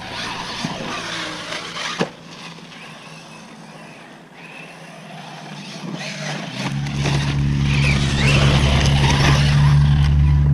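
Arrma Talion 6S RC truck running hard over rough dirt, its brushless motor whining up and down as the tyres scrabble, with a sharp knock about two seconds in. A loud steady low rumble comes in about two-thirds of the way through and stays to the end.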